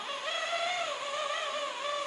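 Electric facial cleansing brush running with a steady whine that wavers in pitch as its spinning head is pressed and moved over the skin.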